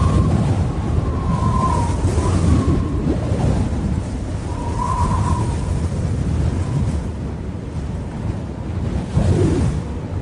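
Rushing, wind-like rumble with hiss over it and a thin steady high tone, swelling louder about nine seconds in.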